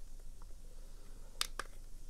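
Two short plastic clicks about one and a half seconds in, as a button on a Beurer BM 49 blood pressure monitor is pressed and the unit switches on; otherwise faint room tone.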